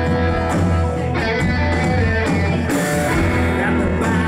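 Live swamp-rock band playing: electric guitars over a steady bass line and drums.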